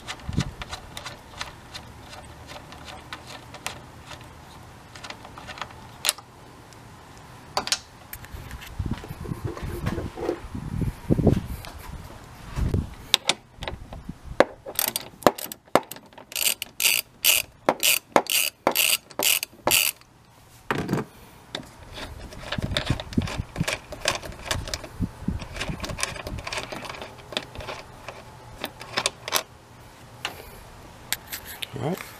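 Hand ratchet clicking as it backs out a 13 mm fan-shroud bolt. The clicks come in scattered strokes, with a quick run of even clicks, two or three a second, in the middle.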